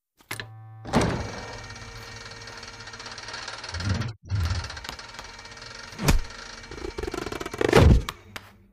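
Cartoon sound effects from the Big Idea logo animation: a sharp knock about a second in, heavier thumps around the middle, another sharp knock and a loud thump near the end, over a steady tone underneath.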